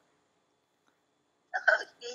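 A pause of near silence on a video-call line, then, about a second and a half in, a brief burst of a person's voice.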